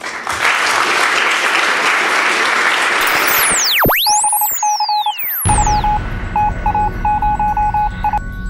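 Electronic outro jingle: a loud rushing noise for about three seconds, then sweeping rising and falling whistle-like glides, then a run of short electronic beeps over a low bed that leads into music.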